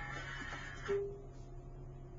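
FM station music playing from a 2005 Volkswagen Jetta's factory radio, cutting off suddenly about a second in as the radio is switched from FM to CD mode with no disc loaded. A steady low hum continues underneath.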